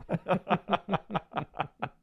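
A man laughing: a quick run of about nine chuckles, some five a second, tapering off near the end.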